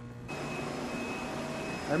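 Steady machinery noise of a transmitter hall, starting abruptly a moment in: a rushing hiss with a thin high whine and a low hum. It comes from cooling water circulating through the water-cooled Marconi transmitters, which keep running in standby.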